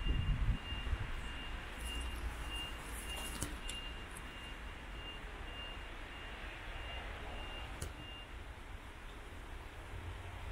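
A vehicle's reversing alarm beeping, short high beeps about twice a second that stop near the end, over a low outdoor rumble.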